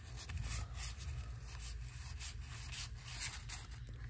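A stack of 1987 Donruss cardboard baseball cards being flipped through by hand. Each card slides against the next, giving a faint, irregular run of scuffs and rubs.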